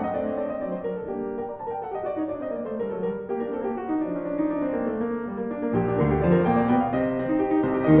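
Grand piano playing a classical passage: runs of falling notes, then deep bass notes coming in about six seconds in.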